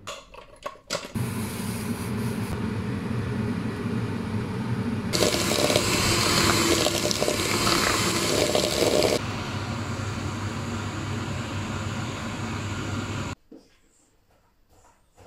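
Electric hand mixer whisking egg whites in a bowl, running steadily with a louder, harsher stretch in the middle, then switching off suddenly near the end. A few short clicks come before it starts.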